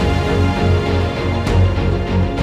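Background score music: sustained tones over a low bass pulsing about twice a second, with a sharper hit about one and a half seconds in.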